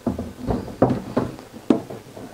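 Solar generator electronics box being set down and seated on top of its battery pack: a run of about five knocks and clunks, with the sharpest click near the end.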